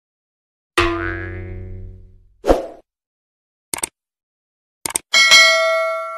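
Editing sound effects for a subscribe-button animation. A pitched tone fades over about a second, then come a short thump and two quick double clicks, and near the end a bell ding rings on.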